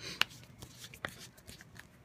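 Hands handling small craft items on a tabletop: one sharp click a fraction of a second in, then faint scattered taps and rustles.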